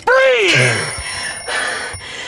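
A man's shout, then a woman's loud sighing exhale as she lets out a breath she has been holding. A thin, high, steady ringing tone sits underneath from about half a second in.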